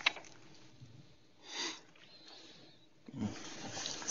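Quiet room tone with one short, breathy sniff about a second and a half in.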